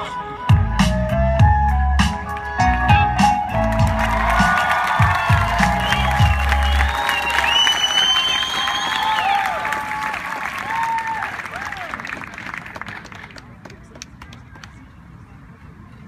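Performance music with a heavy bass beat plays and stops about seven seconds in. The audience cheers, whoops and applauds over its end, and the applause gradually dies away.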